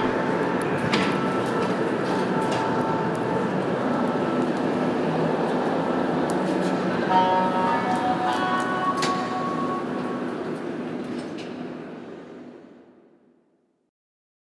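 Metro train running, a steady loud rumble with a few steady whining tones about seven seconds in. It fades out over the last few seconds.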